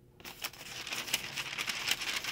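Tissue paper in a shoebox crinkling as it is pulled back by hand: a dense run of small crackles that starts a moment in and grows louder.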